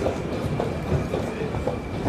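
Metro station din at the foot of an escalator: a steady low rumble with scattered clicks and footsteps on the stone floor, and a thin steady high tone over it.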